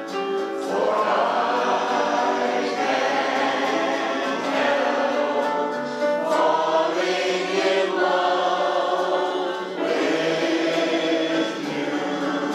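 Mixed choir of men's and women's voices singing a song in parts, accompanied on a digital piano, with short breaks between phrases.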